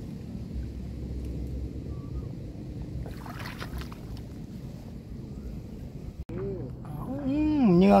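Water sloshing and dry reeds rustling as a man wades in a shallow marsh pool, with a louder splashing rustle for about a second some three seconds in, over a low steady rumble.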